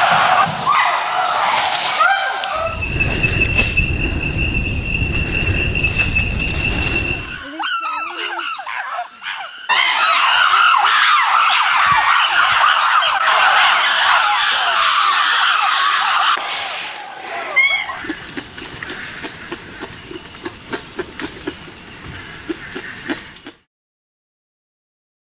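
Forest field recording of wild chimpanzees calling, their voices wavering and overlapping, loudest in a dense chorus partway through. Steady high-pitched drones run underneath, one with a low rumble early on and another in the last few seconds. The sound cuts off abruptly just before the end.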